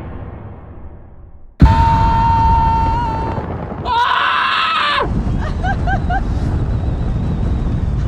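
A booming sound effect fading out, then a sudden loud scream from a man, held for about three seconds and cutting off sharply about five seconds in. After that, wind rushing over the microphone and road noise in a moving open-top car, with short bits of voice.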